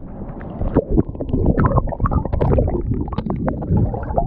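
Seawater washing over and around an action camera's waterproof housing as it goes under the surface: a dull churning with many short bubbly crackles and pops throughout.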